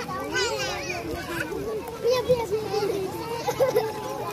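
Young children's voices while playing in water: overlapping chatter and high-pitched calls.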